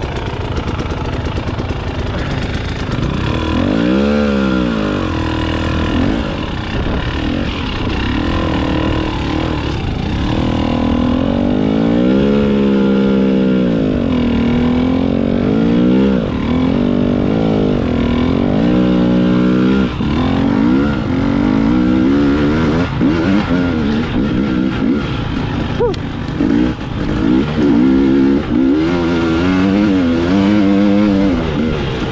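2021 Husqvarna TX300i fuel-injected two-stroke engine being ridden, its pitch rising and falling again and again as the throttle is opened and closed, with quick short blips near the end.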